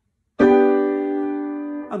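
A G major chord, the last three notes of a twelve-tone row, struck together on a piano about half a second in, then held and slowly fading.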